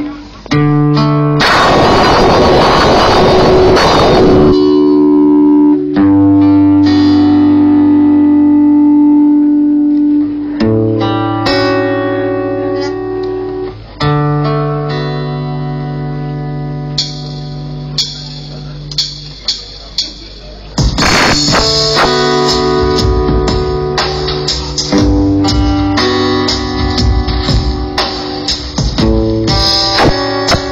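Live experimental electronic folk music with plucked guitar over long held notes and bass tones. A burst of noise comes a couple of seconds in, and about two-thirds of the way through the music fills out with a quick clicking beat.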